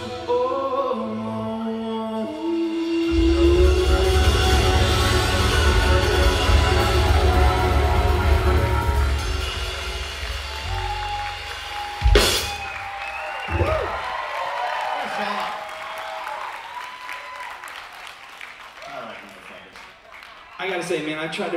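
Live rock song ending: male vocals over acoustic guitar and drum kit, heavy and sustained through about ten seconds, a sharp final hit about twelve seconds in, then the sound dies away with some crowd cheering and applause.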